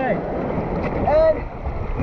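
Water rushing and a raft swishing along a water-slide chute, with wind buffeting the action-camera microphone. Boys give short shouts about a second in and again at the end.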